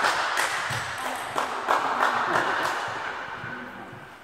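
Audience applauding and cheering in a hall after a point, dying away over the last couple of seconds.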